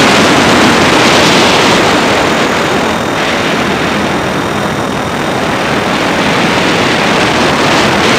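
Blade 400 electric RC helicopter in flight, heard from a camera on board: a loud, steady rush of rotor wash and wind over the microphone, with a faint high whine from the motor.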